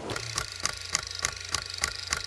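Rapid, evenly spaced clicking, about five clicks a second, over a steady low hum: an edited-in effect under a title card.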